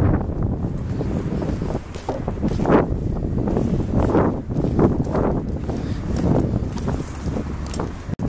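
Wind buffeting the microphone in uneven gusts, with faint street traffic noise behind.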